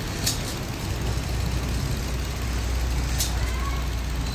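Steady low hum of pneumatic spray equipment, with two short hisses of air about three seconds apart.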